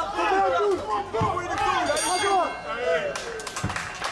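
Several men shouting over one another from ringside, with crowd noise behind. About two seconds in a brief high ringing tone sounds. In the last second the voices fade and sharp claps take over.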